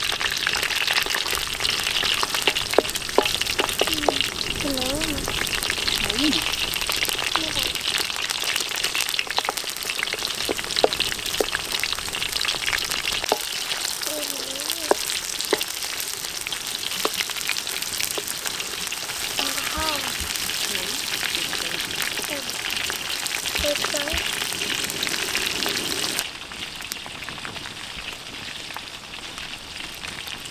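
Shrimp, squid and egg frying in hot oil in a wok: a steady, loud sizzle, with a wooden spatula stirring and scraping through it. The sizzle drops off sharply a few seconds before the end.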